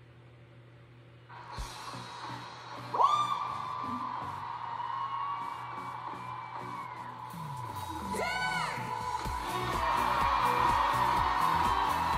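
Opening of a live concert recording of a pop ballad: an audience cheering and whooping over a held note, then a steady drum beat comes in about eight seconds in and the music grows louder.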